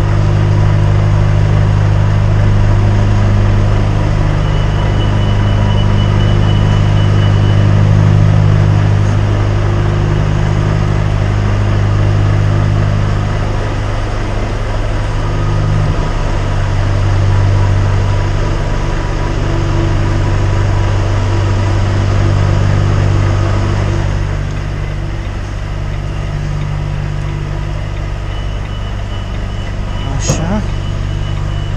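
Articulated lorry's diesel engine running at low revs while the truck reverses onto a loading dock, its steady hum swelling and easing a few times.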